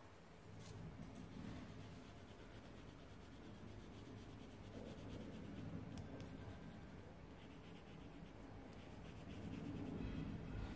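Colouring pencil scratching faintly on paper in rapid back-and-forth strokes as a drawing is shaded in.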